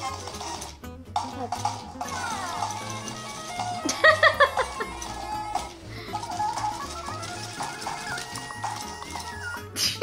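Upbeat music with a steady, repeating bass beat, with a few short high vocal bits near the middle.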